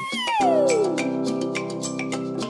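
A cartoon cat meow sound effect: one call that rises and then falls over about a second, over background music with evenly struck notes.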